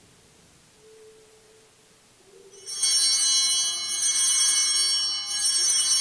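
Altar bells (a cluster of sanctus bells) rung at the elevation of the host after the consecration, marking the moment the host is raised. They start suddenly about three seconds in as a bright, high jingling ring, shaken again twice more, and are still ringing at the end.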